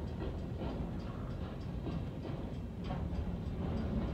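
Freight train of empty trash-container cars rolling past a grade crossing, heard from inside a car: a steady low rumble of wheels on rail with faint, irregular clicks.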